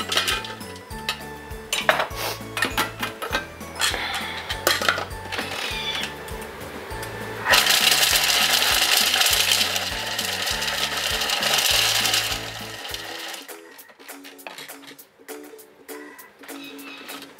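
Roasted chestnuts knocking and clattering as they drop into the steel bowl of a Thermomix. About halfway through, the Thermomix's blade starts suddenly and runs loudly for about five seconds, chopping the chestnuts into a paste, then stops.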